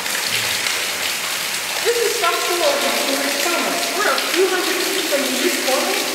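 Groundwater running and dripping down a rock face from a fault zone in a rock tunnel, a steady splashing hiss. A woman's voice joins it about two seconds in.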